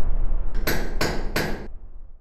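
Logo-sting sound effect: a deep rumble with three sharp strikes about a third of a second apart, starting just past half a second in. The rumble fades toward the end.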